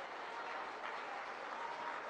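Audience applauding, heard faintly and evenly through the lectern microphone.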